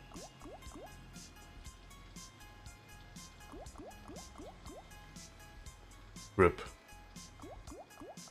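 Online slot game audio: quiet background music with runs of quick rising bubbly blips, four or five at a time, as the reels spin. A brief louder pitched sound comes about six and a half seconds in.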